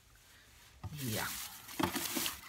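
Rubbing and rustling of items being handled, starting about halfway in.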